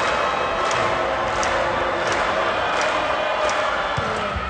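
Large arena crowd at a volleyball match, many voices shouting, cheering and chanting at once, with a sharp beat repeating roughly every 0.7 seconds.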